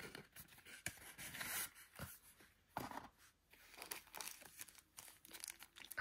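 Faint rustling and crinkling of a paper pamphlet and a plastic pouch being handled, with scattered short crackles.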